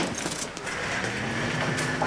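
Soft background bustle with a few light clicks, then a steady low drone that fades in about halfway through and holds.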